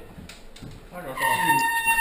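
A signal horn starts about a second in and holds one steady, unwavering tone: the signal that starts an airsoft round.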